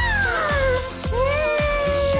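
K-pop song playing over a steady beat, with a high voice singing two long swooping notes: the first slides down over about a second, the second rises and is held.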